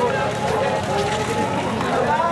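A marching crowd: many overlapping voices calling out together over a steady patter of footsteps on the road.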